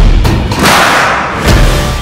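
Heavy thumps of an alligator's body knocking against the side and floor of a metal boat as it is hauled aboard, three loud irregular knocks in two seconds, with rock music playing over them.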